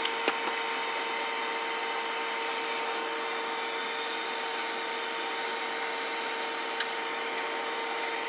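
Steady static hiss from the receiver of a Galaxy 98VHP 10-meter radio just after power-up, with a steady hum-like tone under it and a couple of faint clicks.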